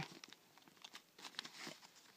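Faint rustling and a few light clicks of small toiletry items being handled inside a zippered cosmetic pouch, mostly in the second half.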